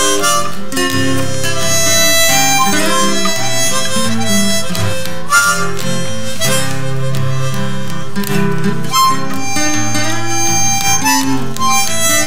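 Instrumental break of a folk song: a harmonica plays the melody over acoustic guitar accompaniment.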